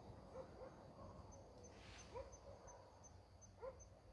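Faint night ambience: an insect chirping steadily at a high pitch, about three chirps a second, with a few short rising calls from a distant animal.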